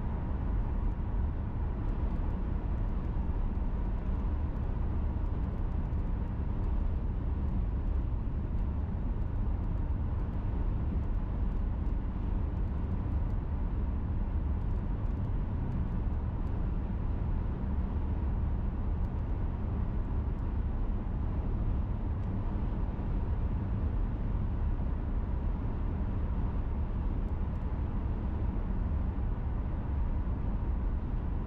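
Steady road noise inside a moving car's cabin at highway speed: a low, even rumble of tyres and engine that holds constant, with a faint steady tone above it.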